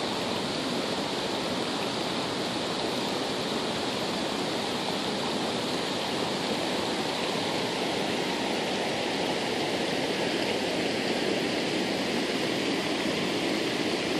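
Steady rush of water from a creek that heavy rain has flooded over its banks.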